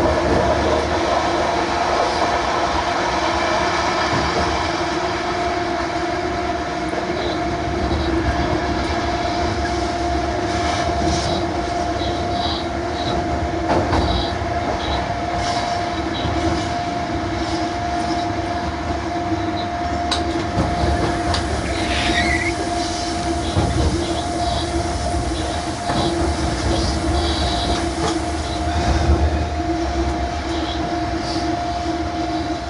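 Electric freight locomotive running, heard from the driver's cab: a steady two-tone hum over rumbling rail noise, with short high wheel squeals scattered through the second half and one longer falling squeal about two-thirds of the way in.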